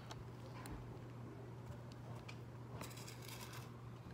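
Faint rustling and a few light clicks of pepper seeds being picked from a small plastic cup by hand, with a steady low hum underneath. There is a denser rustle about three seconds in.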